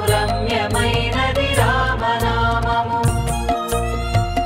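Telugu devotional song: a voice sings a long, gliding melodic phrase over a steady drum beat. The instruments take over the tune in the last second or so.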